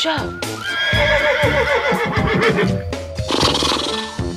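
A horse-like whinny, a quavering call that falls in pitch, starting about a second in over background music.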